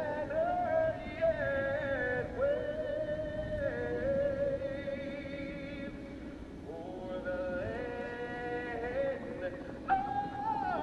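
A solo voice singing a slow melody in long held notes, with a short break about six seconds in: typical of the national anthem sung before a race start. A low steady background rumble runs underneath.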